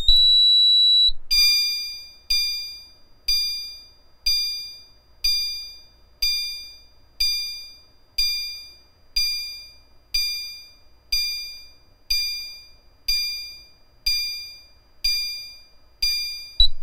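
System Sensor CHSWL chime strobe sounding its '1 Second High' tone: a bright electronic chime struck about once a second at high volume, each note ringing out and fading before the next. It opens with a steady high-pitched beep about a second long before the chimes start.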